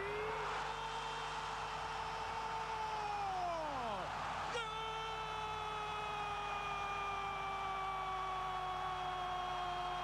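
Football commentator's drawn-out goal cry: one long high held note that slides down and breaks off about four seconds in, then a second long held note that slowly sinks in pitch.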